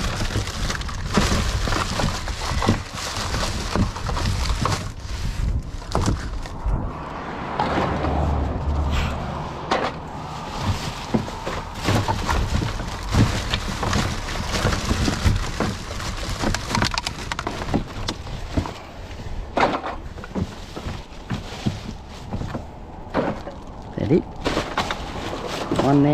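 Plastic rubbish bags crinkling and rustling as gloved hands rummage through them inside a plastic wheelie bin, with scattered knocks of items against the bin.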